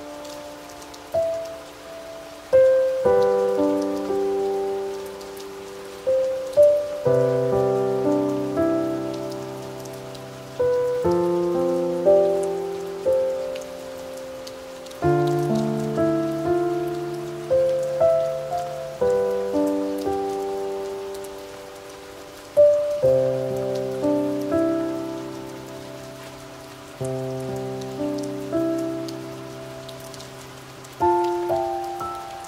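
Slow, soft instrumental music of ringing notes that strike and fade, over a steady patter of rain.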